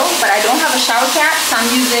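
Crinkling rustle of a white plastic mailer bag being handled and shaken, with a woman's voice over it.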